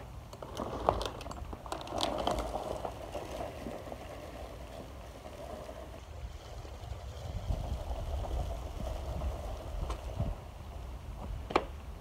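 Push broadcast spreader rolling over grass, its wheels and spinner rattling as it scatters large fertilizer granules, heard faintly from a distance over a steady low rumble.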